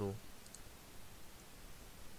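Faint computer mouse clicks: a quick pair about half a second in and a single click about a second and a half in, over quiet room tone.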